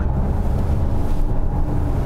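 Steady low engine drone and road noise inside the cabin of a Skoda Superb with a four-cylinder diesel, driving along.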